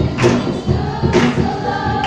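A group of girls singing together over music with a strong beat about once a second, one note held near the end.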